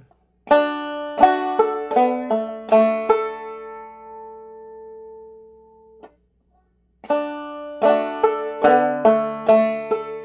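Clawhammer banjo playing a short melodic phrase of about seven plucked notes and strums, then letting the last chord ring out. After a brief pause the same phrase is played again.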